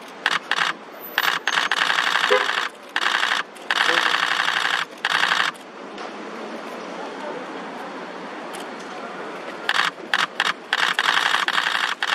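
Camera shutters firing in rapid continuous bursts, in runs of a second or more each, with a quieter lull in the middle.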